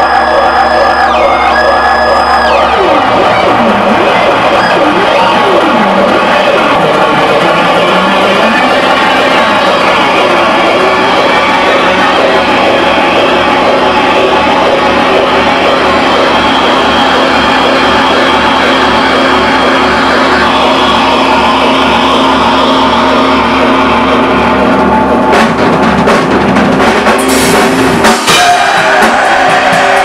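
Heavy rock band playing loud: a sustained wall of distorted electric guitar with swooping pitch slides, and drum hits coming in near the end.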